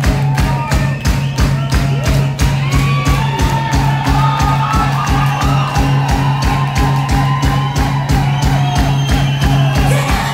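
Punk rock band playing live: distorted electric guitar and bass over a fast, steady drumbeat, loud and full.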